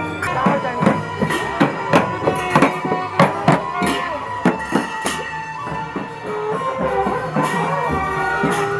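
Traditional Newar procession music: long horns sounding steady held notes over a busy beat of drums and percussion, with the strikes densest in the first five seconds.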